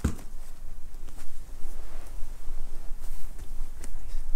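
A single thump right at the start, then soft rustling and scuffing of jiu-jitsu gi cloth and bodies shifting on a grappling mat, with a few faint clicks, over a low steady hum.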